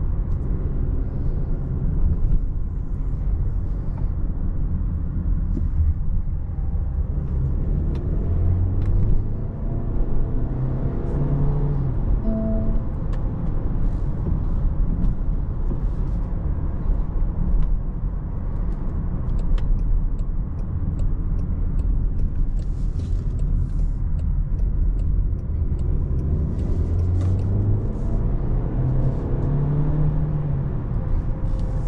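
Cabin sound of a 2024 Range Rover Evoque's 2.0-litre turbocharged four-cylinder petrol engine and tyre rumble at road speed. The engine note climbs under acceleration about ten seconds in and again near the end.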